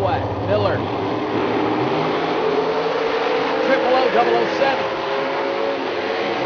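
Drag-race cars' engines running at a drag strip, a steady engine note that drifts slightly upward, with a man's voice over it, likely the track announcer on the public-address system.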